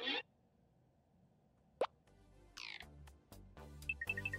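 Cartoon sound effects and score: a short pop about two seconds in, followed by a falling glide and soft background music coming in.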